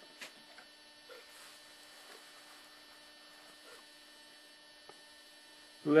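Faint, steady electrical mains hum with a few light clicks.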